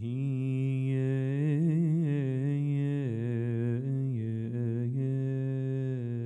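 A man's voice chanting Coptic liturgical chant: a long melismatic line held near one low pitch, with rippling ornamental turns and brief dips. It starts suddenly at the beginning.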